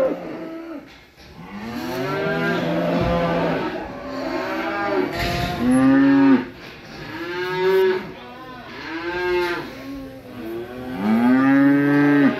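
Several cattle mooing in a stockyard, one long call after another, often overlapping.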